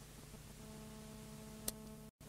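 Faint hiss and hum from a cassette-tape audiobook transfer in the gap between the end of one tape side and the start of the next, with a few faint steady tones, and one sharp click near the end.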